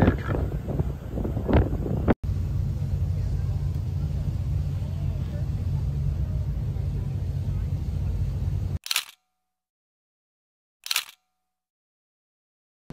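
Steady low rumble aboard a tour boat on the water. It cuts to silence, broken by two camera-shutter clicks about two seconds apart.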